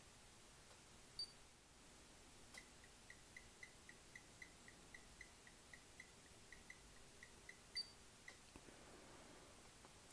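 Near silence, room tone only. There is a faint click about a second in, then a faint, rapid string of short high ticks, about three a second, that stops near the end, with another faint click just before it stops.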